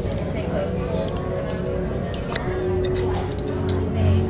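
Metal fork and knife clinking and scraping against a ceramic bowl while cutting up a salad, with several sharp clinks spread through the moment. Steady background music runs underneath.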